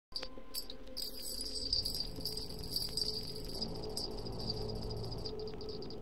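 Crickets chirping in a steady, pulsing high trill over a faint low hum, as the ambient intro of an electronic track.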